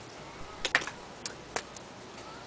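A handful of light, sharp clicks and taps, about five within a second or so, from small plastic makeup items being picked up and handled.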